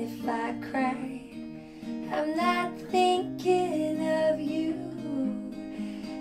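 Acoustic guitar being strummed, with a woman singing short melodic phrases over it.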